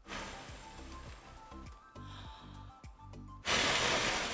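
Breath blown hard at a foil toy pinwheel: a puff at the start, then a longer, much louder blast near the end that rushes straight into the microphone. Background music with a repeating pattern plays underneath.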